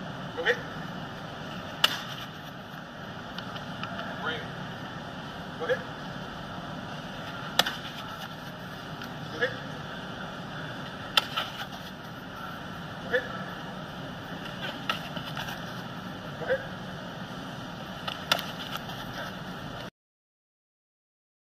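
Steady room noise of an indoor practice field, broken about every two seconds by a short sharp knock or a brief voice-like call as players cycle through a drill.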